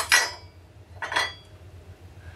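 Small chrome bridge-cover parts clinking against each other as they are handled: two quick metallic clinks with a short ring at the start, and one more about a second in.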